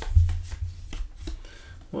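Trading cards being flipped through by hand and laid down on a table: light rustling and sliding of card stock with soft clicks, and a sharper knock just after the start.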